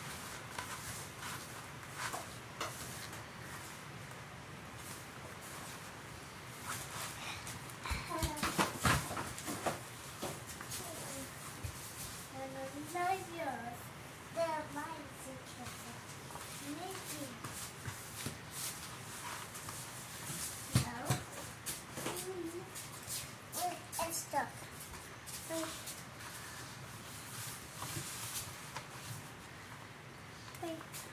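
Hands squeezing and crumbling a flour-and-vegetable-oil moon sand mix in a plastic bowl, giving soft rustling and crunching with scattered sharp taps, busiest about eight seconds in and again around twenty seconds. A young child's voice, without clear words, comes in now and then from the middle on.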